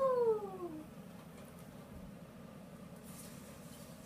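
A cat meows once, a single call that falls in pitch and lasts under a second.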